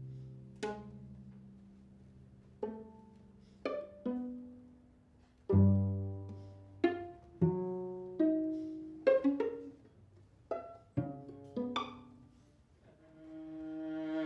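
String quartet of two violins, viola and cello playing sparse, irregularly spaced plucked (pizzicato) notes and chords, each dying away into short silences. Near the end a sustained bowed chord swells in, growing louder.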